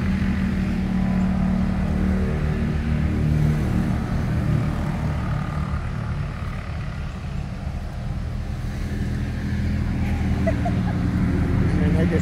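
Side-by-sides and four-wheelers driving past one after another, their engines making a low steady drone that eases a little midway and builds again toward the end.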